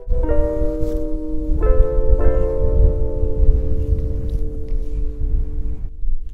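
Background music of sustained, held chords that change twice early on and then hold, over low wind rumble buffeting the microphone.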